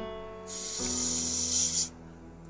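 Slow background piano music with sustained notes. A loud hiss comes in about half a second in and cuts off sharply just before the end.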